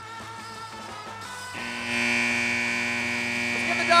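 Arena horn sounding one loud, steady buzz, starting a little over a second and a half in and lasting about three seconds, over a low background hum.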